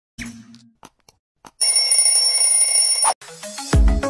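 Subscribe-button sound effects: a few soft clicks, then a bright, steady bell-like ringing for about a second and a half that cuts off sharply. Near the end the song starts with a heavy bass beat.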